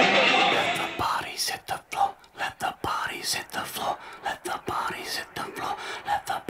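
A loud, dense mix fading out over the first second, then short whispered voice fragments broken by gaps, with faint music under them.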